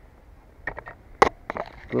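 A few short clicks and scrapes of a hand taking hold of a throwing knife stuck in a frozen wooden log, with one sharp knock a little over a second in.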